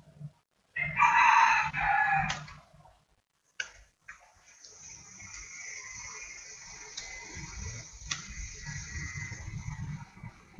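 A loud animal call lasting about two seconds, starting about a second in, then a steady high-pitched hiss for the rest of the time, broken by a few sharp clicks.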